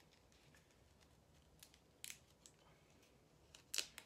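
Fingers handling and peeling the backing from a small Velcro sticky-back pad: a few faint clicks and crackles in near quiet, the loudest pair near the end.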